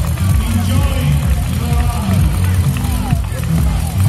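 Loud music with a strong bass, mixed with the voices of a marathon crowd of runners and spectators.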